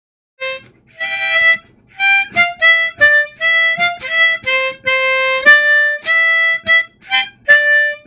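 A harmonica playing a short melody, mostly single notes with a few chordal moments, starting about half a second in and phrased with brief breaks between notes.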